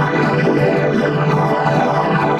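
Music: a logo jingle run through audio effects, heard as a dense, steady, synthesizer-like chord over a sustained low note.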